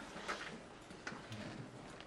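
Quiet room background with a few faint ticks and clicks, the clearest about a second in.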